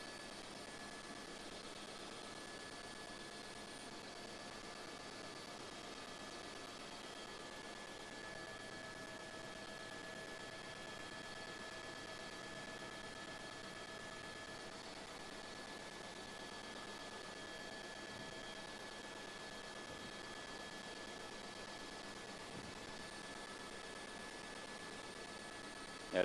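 Faint steady hiss of an open broadcast audio line, with a few thin steady tones running through it. It is line noise on a remote link that is fading out.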